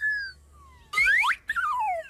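High sliding whistle-like tones: a short falling note, quick upward sweeps about a second in, then a wavering tone sliding steadily downward near the end, a falling-pitch effect marking the balloon dropping.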